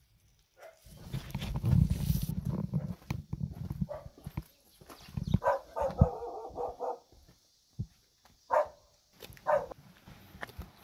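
A dog barking: a quick run of barks in the middle, then two single barks near the end. A loud low rumble, the loudest sound here, fills the first few seconds.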